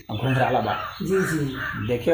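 A man speaking Hindi, with a bird calling in the background.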